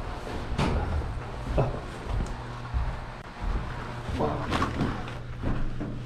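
Footsteps climbing carpeted stairs: dull thuds at irregular spacing, roughly one a second, over a steady low hum.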